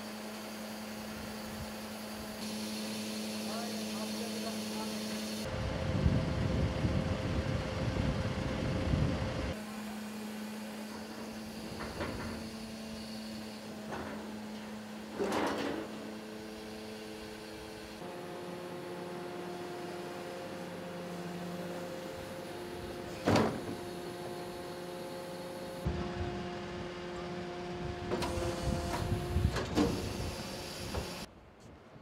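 Dual-compartment refuse collection truck running, its engine and hydraulics humming steadily. There are two louder, rougher stretches as the rear bin lifters work, and a few sharp metal clanks. The sound changes abruptly at several points.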